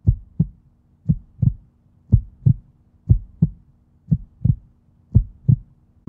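Heartbeat sound effect: six pairs of low thumps, one pair about every second, over a faint steady low drone.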